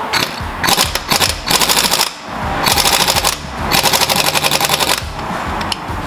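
Air impact wrench hammering on a wheel's lug nut in several rapid rattling bursts. The nut is torqued on far too tight and does not break loose.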